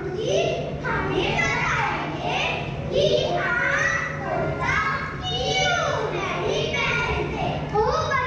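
Young children's voices reciting on stage into microphones, heard in a large hall.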